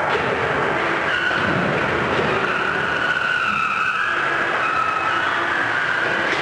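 Combat robots' electric motors whining, a high whine that wavers up and down in pitch over a steady rumbling, scraping noise, with a sharp hit right at the start.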